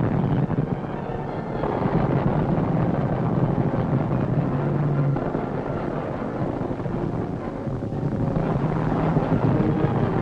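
Propeller aircraft engines droning steadily, a dense continuous rumble.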